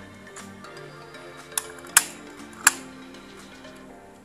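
Background music with a steady beat, over which come three sharp clicks, the loudest about two seconds in, from the hard plastic and metal parts of a die-cast model car being handled.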